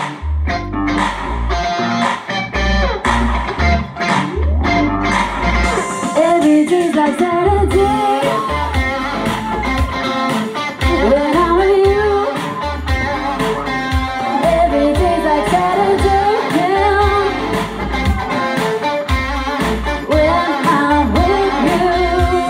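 Live rock band playing: electric guitar, bass and a steady kick-drum beat, with a woman singing lead.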